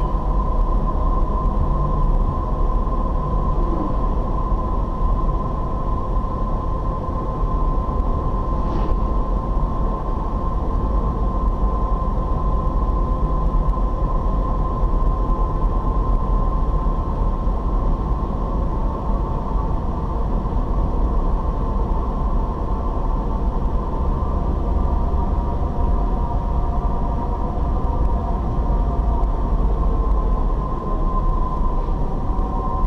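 Car driving at road speed, heard from inside the cabin: steady engine and tyre rumble with a thin, steady whine running over it.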